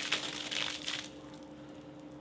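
Bucket of ice water dumped over a person from above: a sudden splash with ice clattering onto paving, dying away within about a second.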